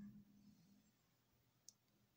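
Near silence: room tone with a faint low hum, and one short faint click near the end.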